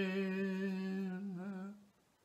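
A man's solo voice, unaccompanied, holding the long final note of a hymn on a steady low pitch. Near the end the note wavers briefly and then dies away.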